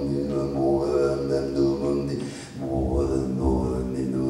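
Wordless, chant-like male vocal drone: sustained pitched tones whose vowel colour slowly shifts, with a short break about two and a half seconds in before the drone resumes.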